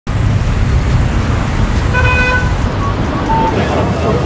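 City street traffic noise: a steady low rumble of passing vehicles, with a car horn sounding for about half a second about two seconds in and a couple of shorter, fainter toots after it.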